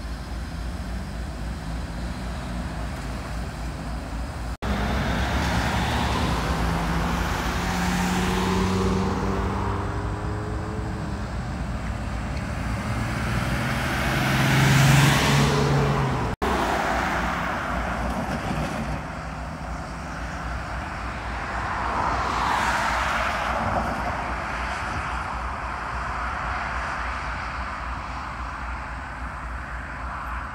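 Road vehicles passing close by one after another, each swelling and then fading, the loudest about halfway through. Under them is the low drone of a slow-moving diesel freight locomotive. The sound cuts out briefly twice.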